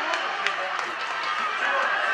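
A group of teenage footballers shouting and cheering at once, many voices overlapping, celebrating a win.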